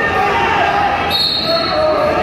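Voices calling out and chattering in a large gym hall during a wrestling bout, with a short high steady tone about a second in.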